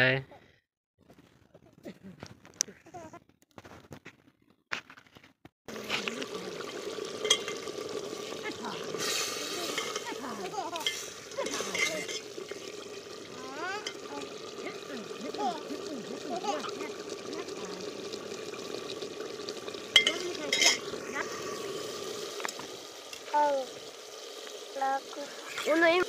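A few faint clicks over near quiet, then from about six seconds in, the steady bubbling of meat curry simmering in a pot, with a ladle stirring through it.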